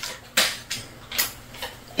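Food wrappers being handled while cream cheese and butter are unwrapped: four short crinkles and taps, the first the loudest.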